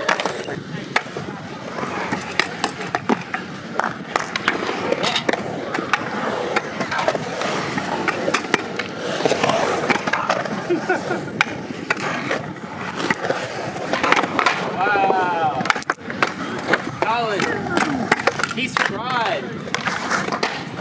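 Scooter and skateboard wheels rolling over concrete in a skatepark bowl, with frequent sharp clacks of decks and wheels hitting the concrete. Voices and a laugh are heard in the background.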